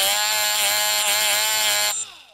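Milwaukee Fuel brushless cordless drill spinning an abrasive disc against the end of an 18650 lithium-ion cell, scuffing the terminal so solder will stick. A steady motor whine with a thin high electronic tone over it, winding down right at the end.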